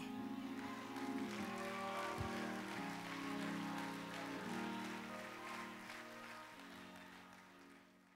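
Soft keyboard music of sustained chords, moving to a new chord every second or so, fading out toward the end.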